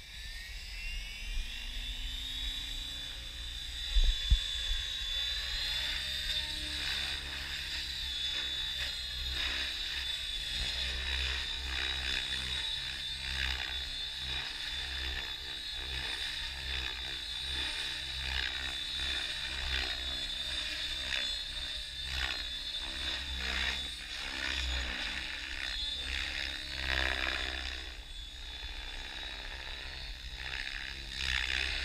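Blade 700 X electric RC helicopter spooling up: a high whine rises in pitch over the first few seconds, then holds steady while the helicopter lifts off and flies. Two thumps come about four seconds in.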